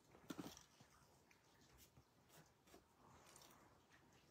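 Near silence with faint handling noise from a ribbon being placed on a paper card: a short rustle about a third of a second in, then a few faint light clicks.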